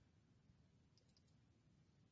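Near silence, with two or three faint computer-mouse clicks about a second in.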